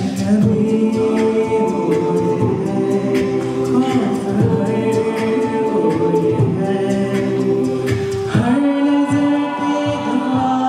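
A mixed-voice a cappella group singing live: a male lead voice over sustained chords held by the rest of the group. The chord shifts, gliding upward, a little after eight seconds in.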